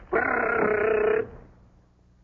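A pencil-sharpener-like gadget, passed off as a vest-pocket machine gun, giving a rapid buzzing rattle that lasts about a second and then dies away.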